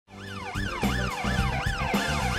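Electronic siren sound rising and falling about twice a second, over a low steady beat. It fades in at the start.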